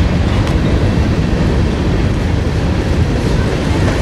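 Freight cars rolling past on the rails: a steady, loud low rumble of steel wheels on track.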